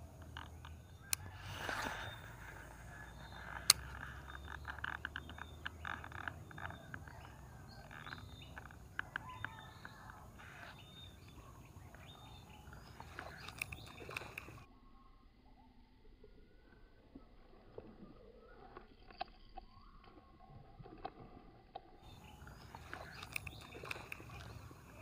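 Faint outdoor background with scattered light clicks and ticks, including a sharp click about a second in and another near four seconds. It goes quieter and duller for several seconds in the second half.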